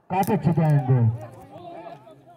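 Speech: a man talking loudly for about a second, then fainter voices.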